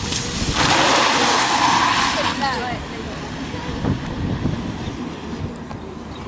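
Audi A1 1.6 TDI driving across a wet, watered track surface: about half a second in, its tyres throw up water in a loud hiss lasting nearly two seconds, over the low running of the engine. Then it carries on more quietly.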